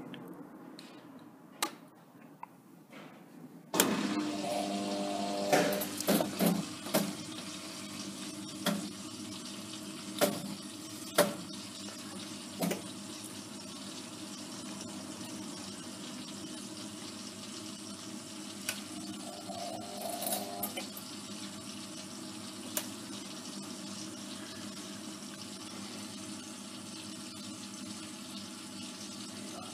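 Faulty Hotpoint Aquarius WMA54 washing machine starting up on its spin setting: about four seconds in, a steady rush of water with a low hum comes on suddenly. Scattered clicks and knocks follow over the next several seconds, but the drum does not spin up. The machine is broken and would not turn or drain properly, which the owner puts down to worn motor bushes or the motor.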